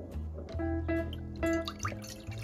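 Background piano music, with milk pouring from a glass measuring jug into a glass bowl, splashing and dripping under the music.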